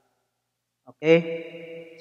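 About a second of silence, then a man's voice saying a long, drawn-out "okay".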